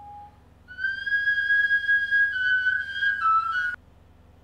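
A high, whistle-like tone held for about three seconds, wavering slightly and stepping down in pitch near the end before it cuts off suddenly.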